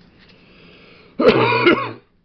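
A person coughing, a short harsh cough about a second in that lasts under a second.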